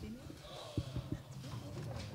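People getting up from their seats in answer to a call to stand: a few dull knocks and thumps of chairs and feet about a second in, under quiet murmuring voices.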